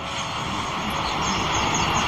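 A steady rushing noise with no speech, swelling slowly louder over two seconds.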